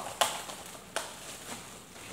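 Clear plastic zipper-seal bag being pulled open by hand: the seal snaps apart sharply about a quarter-second in and again, smaller, about a second in, with faint rustling of the plastic after each.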